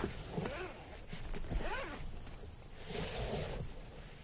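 Zipper of a Thomann soft trumpet case being pulled open around the case in a few drawn-out strokes.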